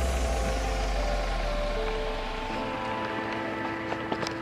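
Mercedes van's engine running as the van creeps away, its low rumble fading out about two and a half seconds in, with steady background music over it.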